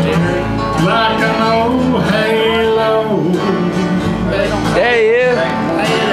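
A live country band playing an instrumental passage with guitar, between sung verses, with a lead line that holds a wavering note about five seconds in.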